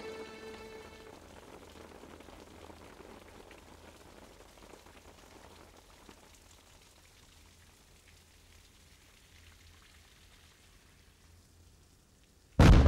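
Background music fading out in the first second, then a faint, even hiss with a few scattered soft ticks that slowly dies away toward near silence.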